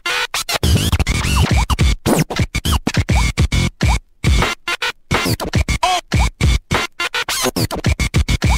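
Hardtek (freetekno) electronic dance music in a chopped, stuttering passage: the track cuts in and out rapidly, with sliding pitches and a brief dropout about four seconds in.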